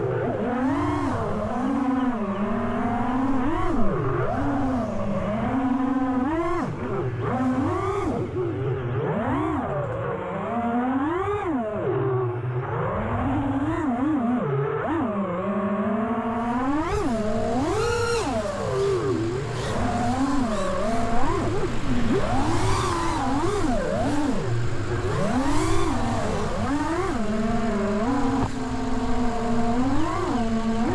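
Prototype T-Motor 2505 1850 KV brushless motors on a 6S FPV quadcopter whining with their propellers. The pitch rises and falls quickly and over and over as the throttle is punched and cut.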